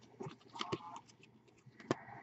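Faint clicks and scrapes of a stack of baseball trading cards being flipped through by hand, card sliding off card, with one sharper click near the end.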